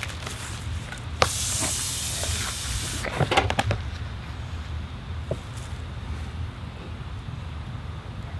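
A sharp click, then about two seconds of high-pitched hissing as pressurised elephant-toothpaste foam sprays out of a small hole cut in a plastic bottle cap. The pressure comes from oxygen gas released as yeast breaks down the hydrogen peroxide mixture.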